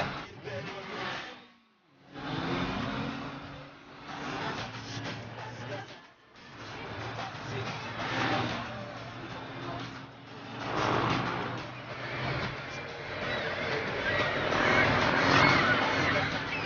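A motorcycle engine and a car engine revving during a chase, their pitch rising and falling, with two brief breaks where the sound drops out.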